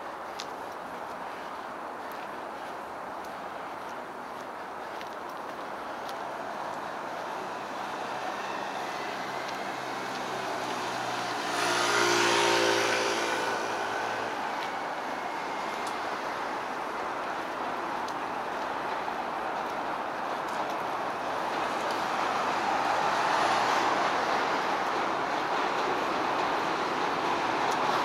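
City street traffic: a steady wash of passing cars, with one vehicle going by close and loud about twelve seconds in, and the traffic growing louder again near the end.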